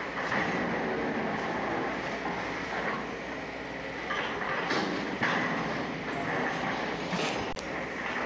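Sumitomo SH250 long-reach demolition excavator running and working its arm, a steady mechanical rumble with a few sharp knocks and clatters of rubble, the loudest near the end.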